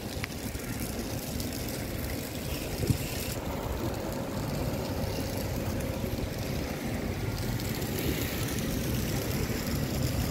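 Outdoor street ambience: a steady low rumble with a hiss over it, and a single sharp knock about three seconds in.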